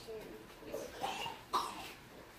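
A few short coughs in a small room, the loudest about one and a half seconds in, with faint voices around them.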